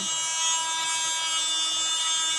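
Baseus mini cordless vacuum cleaner running, its small motor giving a steady whine.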